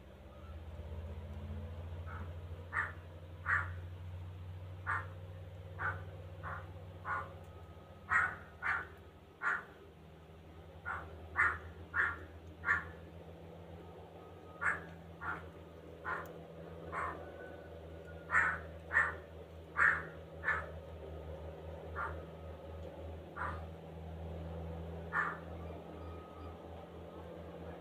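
A bird giving short, harsh single calls again and again, in loose runs about a second apart with brief pauses between runs.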